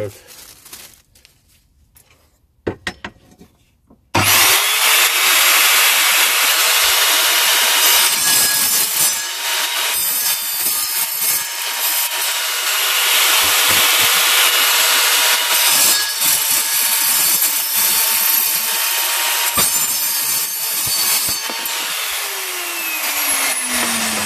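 Evolution R210SMS sliding mitre saw starting about four seconds in, its 210 mm tungsten-carbide-tipped blade cutting through a metal bike frame tube with a loud, steady noise. Near the end the motor winds down with a falling tone.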